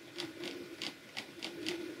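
Computer mouse scroll wheel ticking as a document is scrolled: a quick, even run of faint clicks, about six or seven a second.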